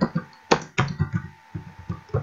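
Computer keyboard typing: an uneven run of key clicks, several a second.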